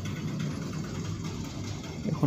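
Steady low engine and traffic noise from the street below, with an engine idling.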